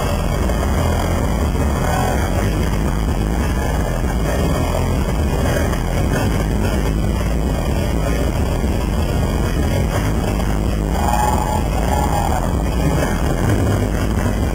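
Loud live pop concert music over an arena sound system, recorded from the crowd on a camera microphone and overloaded, with heavy distorted bass. A couple of held notes stand out near the end.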